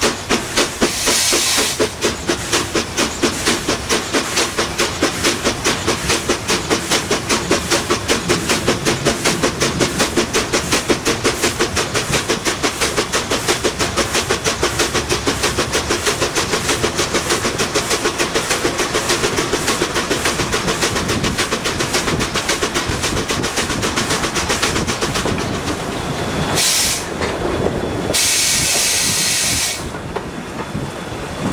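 Steam locomotive running, heard close to its cylinders: a rapid, even chuff of exhaust beats mixed with steam hissing. The beats blur later on, and near the end two loud bursts of steam hiss come a second or so apart.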